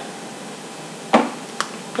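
Makeup items clicking as they are handled. There is a sharp click about a second in and a fainter one half a second later, over steady room hiss.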